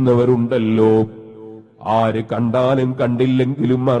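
A man's voice chanting a repetitive, melodic refrain in a sing-song recitation. It pauses briefly about a second in, then goes on.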